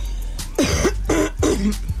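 A woman coughing a few short times to clear her throat.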